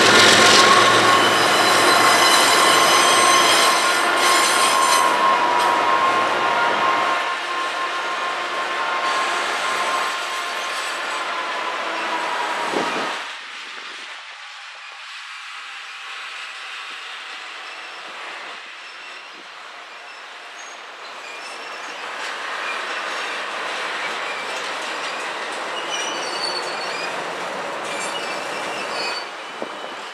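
A CSX diesel locomotive passes at the head of a double-stack container train, its engine loud for the first several seconds. Then the stack cars roll by with steady wheel noise and a squeal tone that sags slightly in pitch and fades about 13 seconds in. The train is quieter after that, with scattered high wheel squeals near the end.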